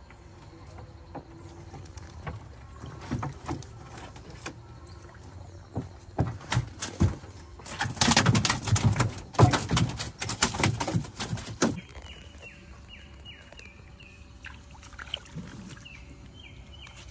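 A fish thrashing in the bottom of a wooden dugout canoe, a rapid run of knocks and slaps against the hull, loudest in the middle and stopping abruptly.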